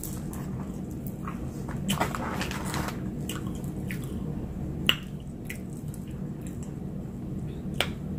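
Scattered short clicks and crinkles as fried food is picked out of a paper-lined basket and handled, with a dense run of them about two seconds in and a sharp click near the five-second mark, over a steady low hum.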